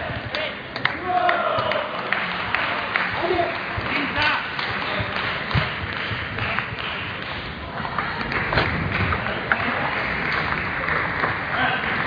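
Table tennis balls clicking off bats and table in a large hall, irregular sharp taps over a steady murmur of many voices.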